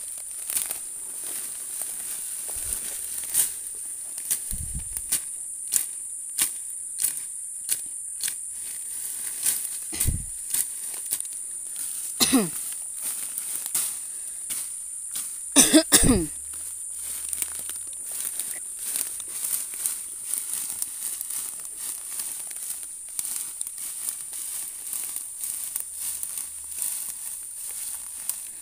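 Crackling, snapping and rustling of dense dry resam fern undergrowth being pushed down and worked through, in many short sharp crackles, over a steady high buzz of insects. Two short pitched sounds break in, about twelve and sixteen seconds in, and the second is the loudest.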